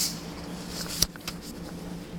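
Plastic toy horse figures being handled: a sharp click about a second in and a few fainter ticks, over a steady low hum.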